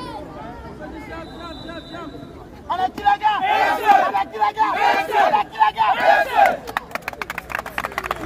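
A football team in a huddle shouting a loud rallying cry together, several voices at once, starting about three seconds in after quieter talk. It ends in a run of sharp claps as the huddle breaks.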